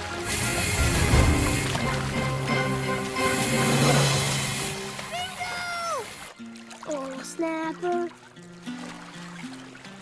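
Cartoon water-splashing and churning sound effect mixed with background music for about six seconds, as a puppy thrashes in the lake; the splashing then cuts off suddenly, leaving light, plinking background music.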